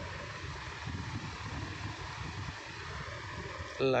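Steady background hiss with a faint low rumble, no distinct event; room or recording noise.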